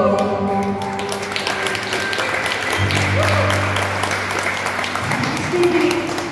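Closing sustained chords from an electric keyboard ending a song sung with microphone, with audience applause breaking out about a second in and carrying on over the chords.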